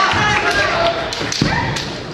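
Kendo fencers' short shouted kiai, several sharp clacks of bamboo shinai knocking together, and thuds of feet on the wooden gym floor as they close in.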